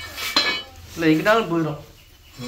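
A sharp metallic clank with a short ring, about a quarter second in, as a metal kitchen vessel is knocked. It is followed about a second in by a brief spoken exclamation.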